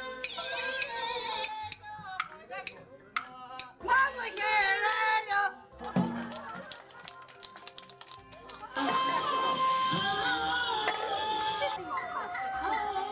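A woman singing a local opera tune through a microphone, with instrumental accompaniment, in several phrases with wavering held notes and short pauses between them.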